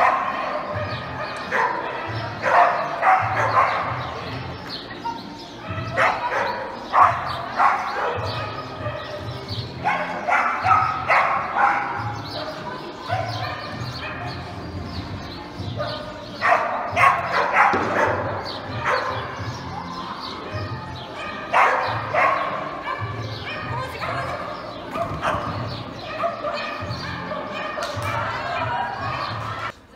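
Border collie barking in excited bursts of rapid barks, a group every few seconds, while running an agility course. Background music with a steady beat runs underneath.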